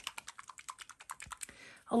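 Rapid light clicking from a plastic bottle of acrylic craft paint being shaken, about ten clicks a second, dying away near the end.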